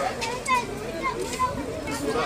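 Children's voices: several children chattering and calling out in high, rising and falling tones, mixed with general talk.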